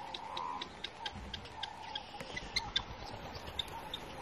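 Faint bush ambience with many short, scattered high chirps from birds over a low hiss.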